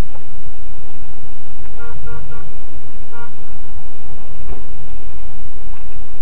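Car horn tooting in three quick short beeps about two seconds in, then one more beep about a second later, over a steady low rumble of engine and road noise inside a car.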